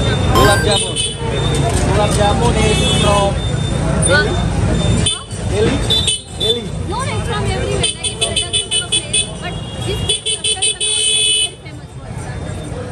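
People talking on a crowded, busy street, with the hubbub of passers-by. In the second half a vehicle horn beeps rapidly in two runs of about a second and a half each.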